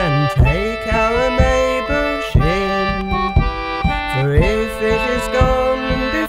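Instrumental break in an English folk song between sung verses: held chords and a moving melody over a regular low beat, with no singing.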